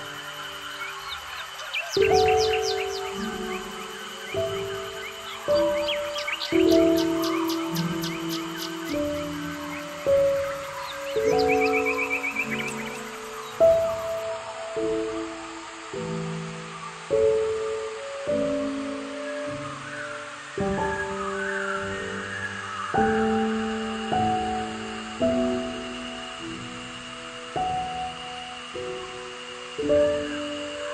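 Calm, slow instrumental music, its notes changing about once a second and fading after each attack, over birdsong: chirps and a short trill in the first half, which then fade away.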